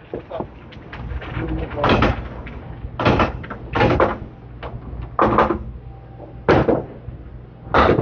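Candlepin bowling alley sounds: balls rumbling along the wooden lanes and the ball-return rail, with repeated sharp knocks and clatter of balls and pins, and voices in the background.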